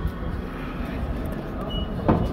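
Indoor ambience of a large stone church: a steady low rumble with faint, indistinct voices of visitors.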